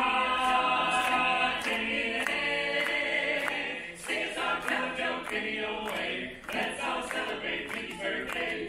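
A small vocal group singing a cappella in harmony, holding sustained chords with short breaks between phrases.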